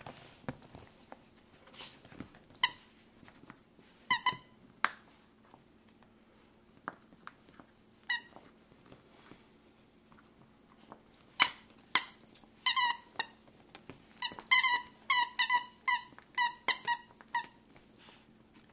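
Squeaker in a plush squirrel dog toy squeaking as a small dog chews and shakes it. Single squeaks come now and then at first, then a quick run of about three squeaks a second near the end.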